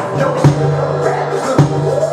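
Live band music: an electronic drum kit keeps the beat, with strong kick-and-snare hits about a second apart, over sustained pitched instrument notes.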